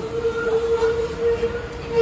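A single steady, held tone over a noisy background.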